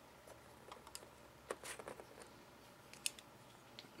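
Faint, scattered clicks and taps of the hard plastic gun and sword accessories of a Hasbro Transformers Fall of Cybertron Air Raid figure being handled and fitted together, the sharpest clicks about a second and a half and three seconds in.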